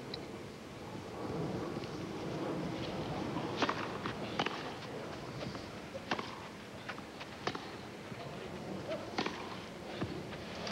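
Tennis rally on a grass court: racket strikes on the ball about every second and a half, each a sharp pop, over a low, steady hum of the crowd.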